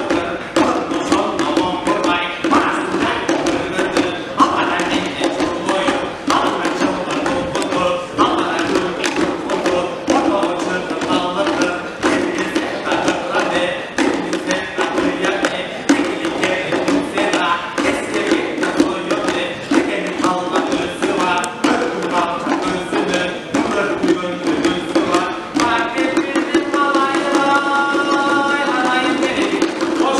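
A Kyrgyz folk ensemble of komuzes, the three-stringed long-necked lutes, strumming a fast, even rhythm together. In the last few seconds a held, pitched melody line joins in above the strings.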